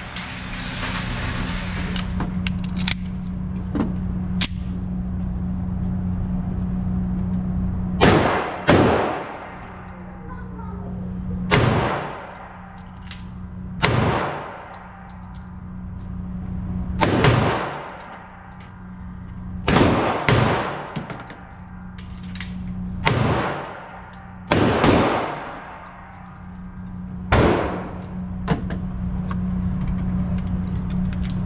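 Semi-automatic pistol shots at an indoor range: about ten loud cracks, one to three seconds apart, starting about eight seconds in. Each crack is followed by a long echoing tail off the range walls, over a steady low hum.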